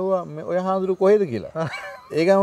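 Only speech: a man talking animatedly in Sinhala, his voice rising and falling in pitch.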